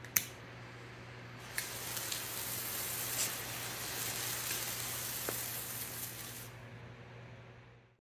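A homemade brilliant red parlon (rubber) firework star burning on concrete with a steady hiss. A sharp click comes just after the start, and the star catches with a small pop about a second and a half in. The hiss dies away about six and a half seconds in.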